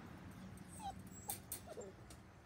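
Standard poodle puppies giving a few short, faint whimpers and yips while wrestling in play, about three little cries in the second half. A couple of light clicks come between them.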